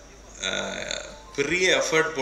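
Speech only: a man talking into a microphone, with a drawn-out low syllable about half a second in and a quick phrase near the end.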